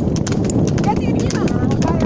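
Water buffalo's hooves clopping quickly on an asphalt road as it trots pulling a wooden cart. Under the clops the cart rattles and its wheels rumble steadily.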